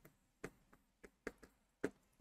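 Faint taps and ticks of a stylus tip against an interactive display screen while a word is written, a few separate light clicks.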